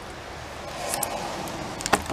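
Metal links of a chainsaw chain clicking lightly as the chain is worked around the bar and drive sprocket, with a faint click about a second in and sharper clinks near the end, over steady background noise.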